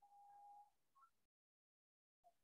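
Near silence on a video call, with a faint, brief steady tone in the first half-second.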